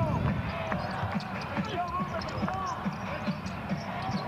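Basketball game sound: a ball dribbling on the hardwood court in short repeated bounces, over the voices and murmur of the arena crowd.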